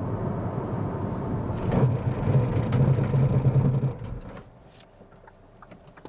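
Cabin noise of a Kia Stonic CRDi diesel braking hard from 100 km/h to a standstill. Steady road and engine rumble, with a low hum growing stronger in the middle, falls away about four seconds in as the car comes to a stop.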